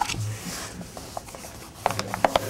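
Sheets of paper handled and shuffled on a lectern close to the microphone, with a few light clicks near the end.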